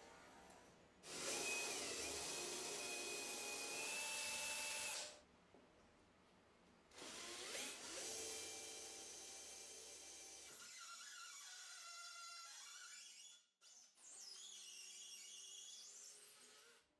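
A power drill boring into a small brass bar clamped in a vise, in three runs with short pauses between: a loud run from about a second in to about five seconds, a longer one from about seven seconds that slowly fades, and a short one near the end.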